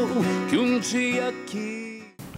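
Closing bars of a slow ballad: male voice and acoustic guitar, the notes dying away toward the end.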